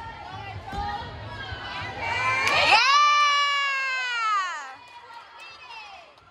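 Spectators in a gym cheering a gymnast: a long, high-pitched "woo"-style shout rises about two seconds in, is held for over two seconds and falls away, over background chatter.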